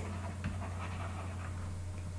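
A quiet pause in a voice recording: a steady low hum under faint hiss, with one light tick about half a second in.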